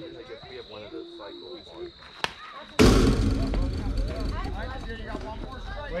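A youth baseball batter's bat meets the ball with a single sharp click a little over two seconds in. Moments later a sudden loud rush of noise starts and fades over a couple of seconds, with shouting in it.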